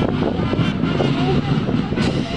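A marching school brass band playing, with sustained brass notes over snare and bass drums, and wind rumbling on the microphone.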